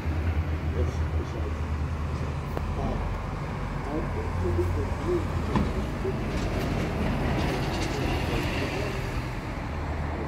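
Outdoor city background noise: a steady low rumble with faint, indistinct voices over it.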